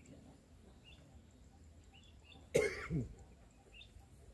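A person coughs once, sharp and sudden, about two and a half seconds in, with a short voiced tail that drops in pitch.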